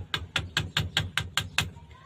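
Small hammer tapping a metal pin into a door lock's latch mechanism: quick, light metal-on-metal taps, about five a second, that stop shortly before the end.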